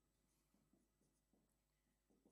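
Near silence with faint strokes of a marker writing on a whiteboard.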